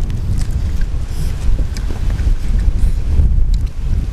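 Wind buffeting the microphone outdoors: a loud, steady low rumble, with a few faint clicks and smacks from eating.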